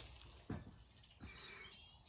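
Faint songbird chirping in the second half, over quiet outdoor background, with two soft knocks about half a second and a second in.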